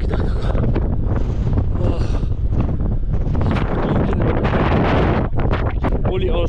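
Wind buffeting a GoPro's microphone: a loud, steady low rumble that does not let up, with a voice heard through it in places.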